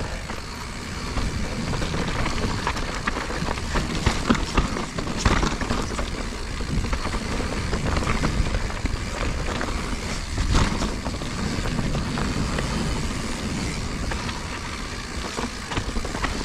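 2021 Giant Reign Advanced Pro 29 full-suspension mountain bike descending a dirt and rock trail at speed, heard from a chest-mounted action camera: a steady rush of tyre and wind noise with the bike rattling and knocking over roots and stones, the sharpest knocks about five and ten and a half seconds in.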